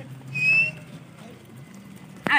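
A person whistles once: a single loud, piercing note, rising slightly in pitch and about half a second long, the kind of whistle shepherds use to drive a flock of sheep and goats. A low, steady engine hum runs underneath.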